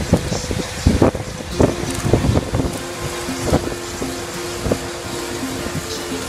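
A moving tram rumbling and clattering, with knocks through the first half, mixed with guitar music whose sustained notes come forward about halfway through.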